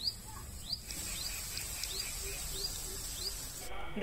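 Wheat-flour gulab jamun balls sizzling as they fry in hot ghee in an iron kadhai, a steady hiss that grows fuller about a second in. A bird calls over it with short rising chirps, repeated about every half second.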